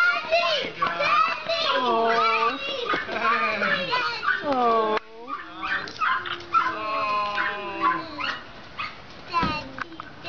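Excited, high-pitched cries and whines, with several long wails falling in pitch one after another.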